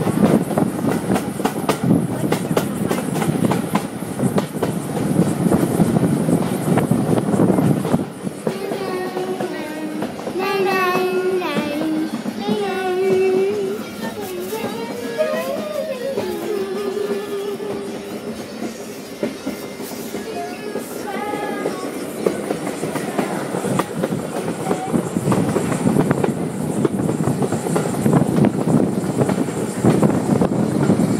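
Heritage steam train carriage running along the line, its wheels clattering steadily over the rail joints, loud through an open window. About 8 seconds in the rail noise drops back and pitched voices sound over it for a stretch, until the clatter comes up loud again near the end.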